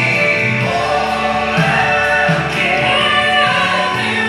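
Gospel music accompaniment playing, with choir-like voices singing over it.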